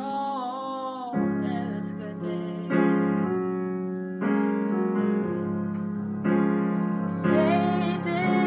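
Piano accompaniment in a slow ballad, with sustained chords struck every second or two and left to ring and fade. A woman's voice sings a held, wavering phrase at the start and comes back in near the end.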